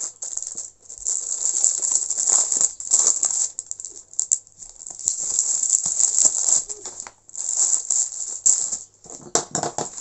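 Paper and plastic rustling and crinkling in bursts as large paper office envelopes and sewing pattern sheets are handled, with a few sharper crackles near the end.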